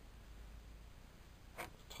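Near silence: quiet room tone with a faint low hum, and one brief sharp sound near the end.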